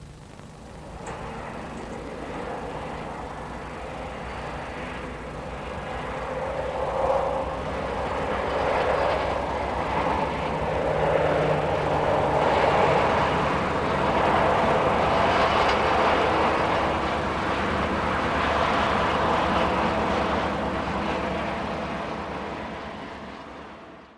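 A diesel-hauled passenger train running by: engine and wheels on the rails. The sound swells from about a second in, stays loud through the middle and fades away near the end.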